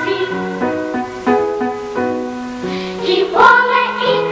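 A children's choir singing with accompaniment. The voices thin out for most of the passage while lower notes step along, then the full choir comes back in strongly near the end.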